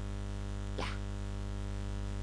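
Steady electrical mains hum and buzz with many overtones, unchanging in pitch, on a headset-microphone recording, with a single spoken 'yeah' about a second in.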